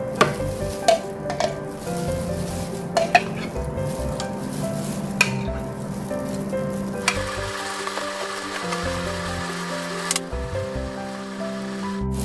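A wooden spoon stirring a salty, syrupy brine in a plastic container, scraping and swishing, with several sharp knocks of the spoon against the container in the first five seconds. Past the middle there is a steady hiss for about three seconds.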